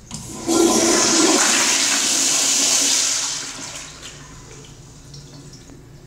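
A commercial flushometer toilet, a 2010s American Standard Madera, flushing. A loud rush of water cuts in about half a second in, holds for about three seconds, then dies away by about four seconds.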